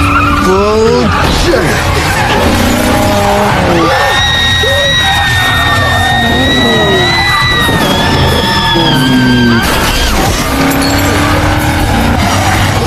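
Film race sound mix: car engines revving in rising glides, then a long steady tyre squeal lasting about five seconds, with a sudden hit near the end, all over a music score.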